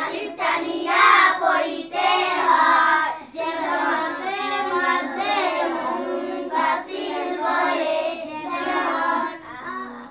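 A girl chanting Quranic Arabic aloud in a melodic tajweed recitation, with held, drawn-out vowels and gliding pitch. There are short pauses for breath, and it drops off just before the end.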